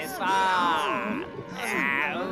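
A cartoon man's voice singing two long, drawn-out notes with a wavering pitch, the second starting about a second and a half in.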